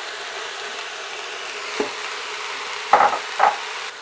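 Onion, pepper, celery, carrots and mushrooms sizzling steadily as they fry in the stainless steel inner pot of an Instant Pot, stirred with a silicone spatula. There is a light knock near the middle and two louder scraping stirs about three seconds in.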